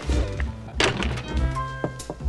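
A wooden door shuts with a single thunk about a second in, over background music, with a lighter click near the end.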